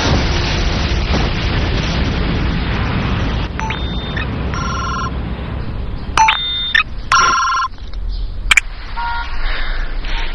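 A dense low rumbling noise for the first three seconds or so. Then a phone's electronic ring tones sound in several short bursts, broken by a couple of sharp clicks, until the call is answered.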